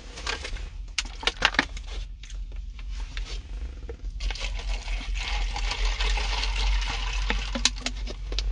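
Handling noise from a phone being moved about and repositioned: scattered clicks and knocks, then about four seconds in a steady rubbing rustle, over a constant low rumble.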